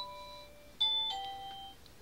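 A simple melody of clear, chiming electronic notes: one note fading out, then two more notes about a second in that fade away before the end.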